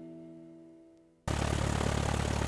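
A held music chord fades out over the first second. Then, about a second and a quarter in, a Stinson 108's piston engine and propeller cut in suddenly, running steadily at low power, heard from inside the cockpit before the takeoff run.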